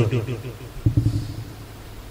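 Pause in a man's speech: his last word trails off at the start, a brief low vocal sound comes about a second in, then only faint steady room hum and hiss remain.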